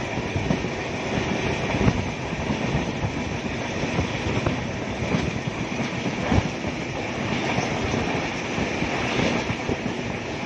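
Passenger train running at speed, heard from aboard a coach: a steady rumble and rush of wheels on rail with irregular knocks over the rail joints, two louder ones about two seconds and six seconds in.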